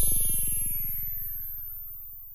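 Tail of a short electronic music sting: a low synth note with a rapid buzzing pulse fading away, while a thin high tone glides upward.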